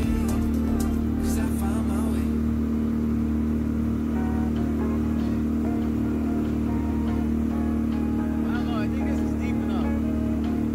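Dinghy outboard motor running steadily under way, a constant even drone.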